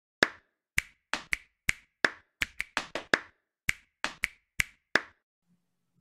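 A run of about sixteen sharp clap-like strikes in an uneven rhythm over five seconds, each dying away quickly.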